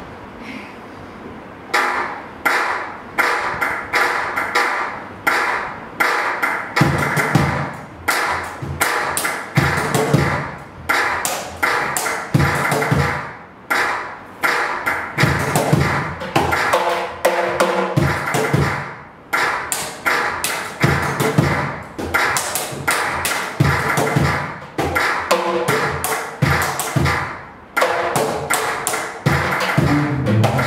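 Live percussion on a small drum set: a brisk rhythm of sharp, dry strikes that starts about two seconds in and runs in phrases with brief gaps every couple of seconds.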